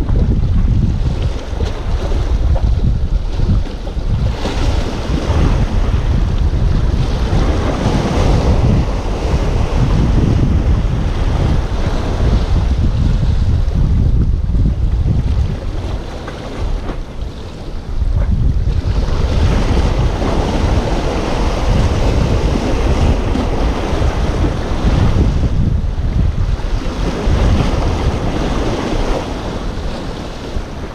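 Wind buffeting the microphone over waves washing against the breakwater rocks, easing briefly a little past halfway.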